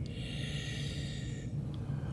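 A soft breath close to the microphone: an even hiss that fades out after about a second and a half.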